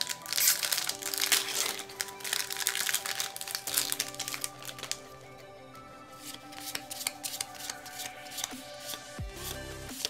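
Foil booster-pack wrapper crinkling and tearing open, dense and crackly for the first three seconds or so. After that come sparser soft clicks of trading cards being slid and flipped in the hand, over background music.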